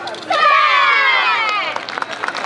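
Many voices shouting together in one long cheer that falls in pitch, starting just after the yosakoi dance music cuts off.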